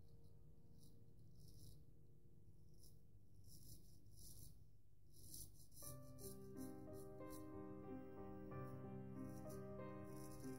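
Faint background music with held keyboard-like notes that fill out about six seconds in, over short scratchy strokes of a Gold Dollar 66 carbon steel straight razor scraping through lather and stubble.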